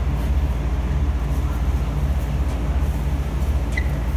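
Running machinery: a steady low drone with an even pulsing hum, and a brief high squeak near the end.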